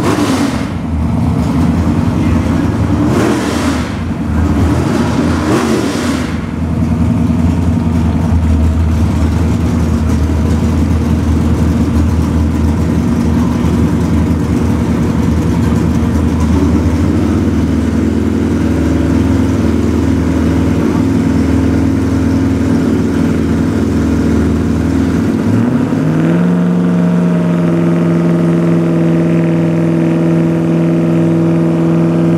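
Camaro drag car's engine idling with a low, steady note as the car creeps up to the starting line. About four seconds before the end it revs up quickly and then holds a steady higher rpm, as a bracket car does when staged and ready to launch.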